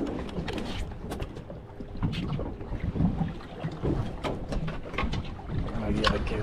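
Wind buffeting the microphone and water around a small fishing boat at sea, with scattered short knocks and clicks on board.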